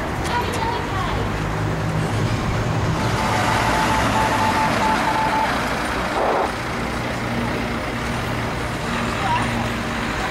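Motor vehicle engine running close by as road traffic, swelling louder for a couple of seconds in the middle, with people's voices around it.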